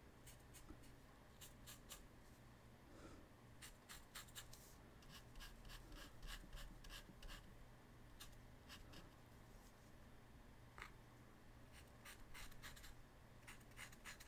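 Faint, irregular scratchy strokes of a small paintbrush dabbing and dragging paint across paper.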